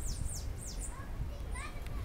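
Bananaquit (Coereba flaveola) singing: a few high, thin, quickly falling notes in the first second, over background voices and a low rumble.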